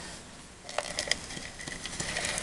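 Stampin' Up Fast Fuse adhesive applicator pressed and dragged along the edge of cardstock: soft scratchy scraping of paper with small clicks, starting about half a second in.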